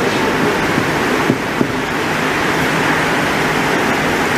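Steady hiss of background noise in the lecture room's recording, with two faint knocks about a second and a half in.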